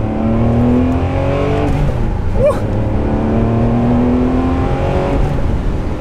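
Ferrari 599's naturally aspirated V12, running on MoTeC standalone ECUs, pulling under way, heard from inside the cabin. The engine note climbs steadily, drops back about two seconds in, climbs again, and falls back near the end.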